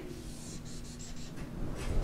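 Dry-erase marker drawing on a whiteboard: a few short, light strokes about half a second to a second in, and one more near the end.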